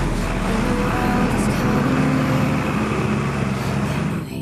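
Case CS 150 tractor engine running steadily under load while pulling a four-furrow plough through dry soil.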